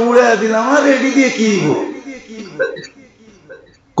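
A man's voice in long, drawn-out syllables for about two seconds, then it falls away into a quiet pause.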